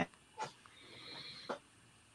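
A faint breath drawn in during a pause in speech, with a couple of small mouth clicks.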